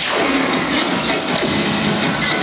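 Loud electronic dance music played over a sound system for a pom routine, with a steady beat.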